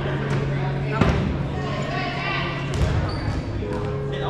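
Foam dodgeballs bouncing on a gym floor, with two sharper thuds about a second in and near the end, amid players' chatter echoing in a large gymnasium.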